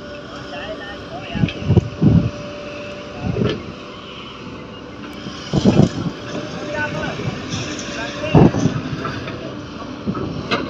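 Komatsu PC130 hydraulic excavator's diesel engine running steadily as it digs and loads sand into a tipper truck, with several short loud bursts about two, three and a half, six and eight and a half seconds in.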